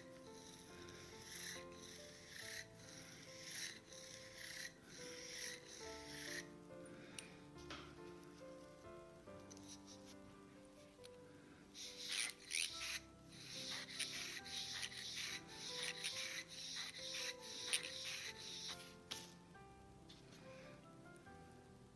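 Scratchy strokes of a twisted-wire bore brush scrubbing a pistol barrel, about one stroke a second at first, then faster and louder strokes in the second half, over soft background music.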